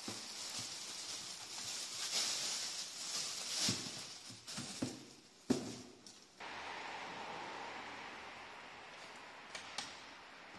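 Plastic packaging rustling and crinkling as a replacement wing mirror is pulled out of its bag and box, followed by a few knocks and a sharp clack of the mirror housing being handled, about five and a half seconds in. After that a steady hiss carries on, with two small clicks near the end as the mirror is offered up to the door.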